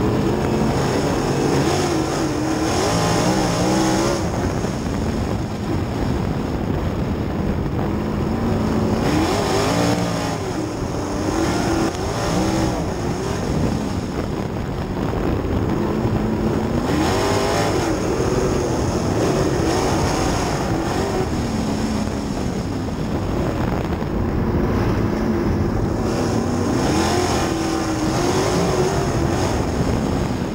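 Outlaw sprint car's engine at racing speed on a dirt oval, heard from inside the cockpit, its note rising and falling again and again as the driver gets on and off the throttle around the laps.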